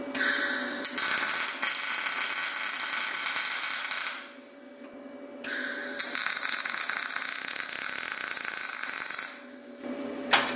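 Gas-shielded MIG welding arc crackling steadily in two runs of about four seconds each, with a pause of about a second and a half between them.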